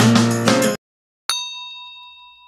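Guitar background music cuts off abruptly under a second in. After a brief silence, a single bell 'ding' sound effect strikes and rings on, fading away slowly.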